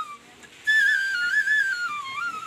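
Bamboo flute playing a melody of high, clear notes. It breaks off for about half a second near the start, then comes back in and steps down in pitch.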